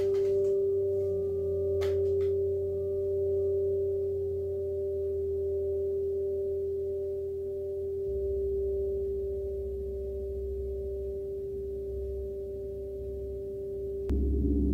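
Burmese triangular whirling gong (kyeezee) ringing on with one sustained pitch after being struck, its level slowly swelling and fading as the gong turns. A few light ticks sound in the first two seconds.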